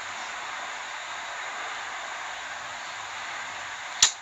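Steady, even background hiss with no clear single source, heard in a pause between spoken answers.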